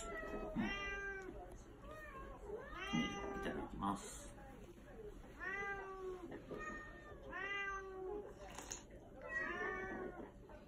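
Domestic cats meowing repeatedly for food: about eight drawn-out meows, each rising then falling in pitch.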